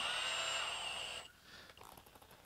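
A quiet, steady high whine from the Milwaukee Fuel cordless hammer drill's motor, stopping about a second in.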